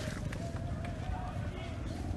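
Faint distant shouting voices, wavering in pitch, over rumbling handling noise from a phone being moved while it films, with a sharp click at the very start.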